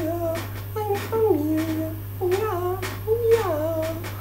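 A woman's voice humming a wordless tune in short notes that slide up and down in pitch, over a steady low hum.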